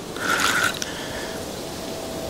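Fishing reel working under load as a hooked barbel is played, with a short mechanical buzz about half a second in, then quieter.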